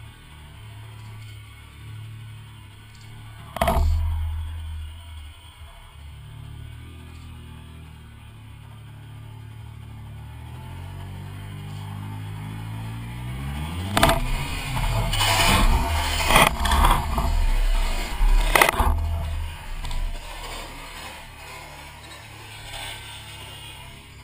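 Triumph Sprint GT motorcycle's three-cylinder engine running at low revs, with a sharp knock about four seconds in. Past the middle the revs rise as the bike accelerates, and it is loudest for about five seconds before easing off.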